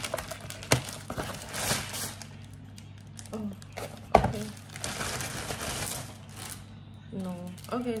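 Plastic packaging crinkling and tearing as a parcel is opened by hand, in two spells of rustling with a couple of sharp snaps.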